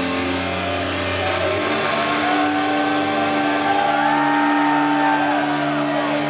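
Two distorted electric guitars hold long sustained notes as a guitar duel ends. The held low chord changes about a second and a half in, while a lead line slides slowly upward with bends and then drops away near the end.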